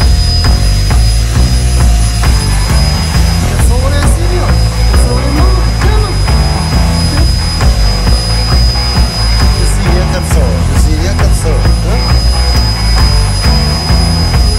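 Canister vacuum cleaner running with a steady high-pitched whine as it is used on the floor, mixed with loud background music with a heavy beat.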